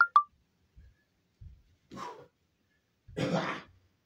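A man's sharp, forceful breaths pushed out with karate strikes: a short one about two seconds in and a longer, louder one just after three seconds. Soft thuds of footwork on the floor come between them, and two brief sharp squeaks sound right at the start.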